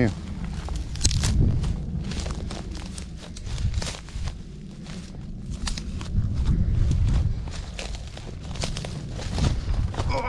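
Footsteps crunching and rustling through dry grass and brush, irregular crackly steps, over a low gusty rumble of wind on the microphone.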